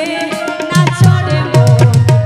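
Instrumental break in a Bengali Baul folk song: a hand drum plays a fast rhythm over held melody notes, its deep bass strokes coming in strongly under the tune less than a second in.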